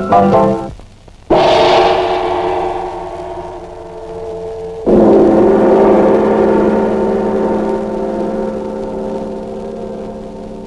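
Two loud gong-like strikes about three and a half seconds apart, each hitting suddenly and ringing on with a slow fade. The end of a short tuned-percussion tune is heard just before the first strike.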